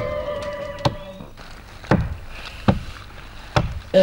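Axe chopping into a tree trunk, one sharp stroke a little less than once a second. In the first second a single held musical note fades out under the strokes.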